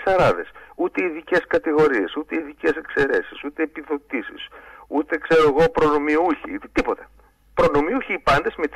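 Speech only: continuous talking in Greek, with a brief pause near the end.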